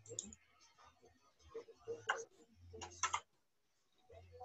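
Faint clicking over a video-call line, with two sharper clicks about two and three seconds in, and a faint voice and a low hum that comes and goes.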